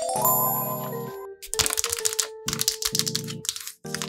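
Background music with a shimmering sparkle effect in the first second, then a run of crisp taps and rustles from paper cutouts being handled and laid down.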